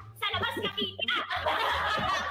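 Several young women laughing together, mixed with talk.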